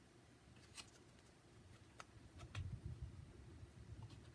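Faint handling of a deck of oracle cards, mostly near silence: a few sharp clicks of cards tapping, with a low rumble of hands and cards moving past the microphone in the second half.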